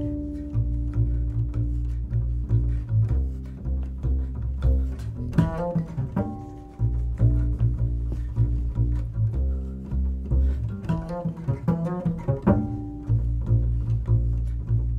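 Solo acoustic double bass played pizzicato: a continuous line of plucked notes over deep low notes, with quick flurries of higher notes about five seconds in and again near the end.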